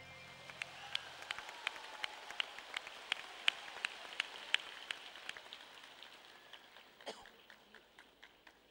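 Scattered applause from an audience, with single hand claps standing out, several a second. It thins out and fades toward the end.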